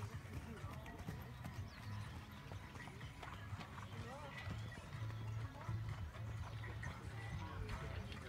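Horse cantering on sand footing: dull, regular hoofbeats at a canter rhythm, about two strides a second.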